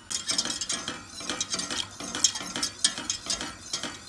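Wire whisk beating a milk-and-roux sauce in a stainless steel saucepan, its wires scraping and clicking quickly and unevenly against the pan as milk is worked into the butter-flour roux.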